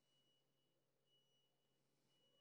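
Near silence: faint room tone with a thin steady electrical tone.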